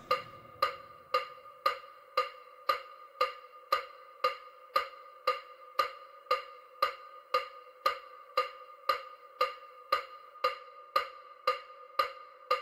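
Electronic wood-block-like ticks repeating evenly about twice a second over a steady held tone: an EMDR bilateral-stimulation sound track.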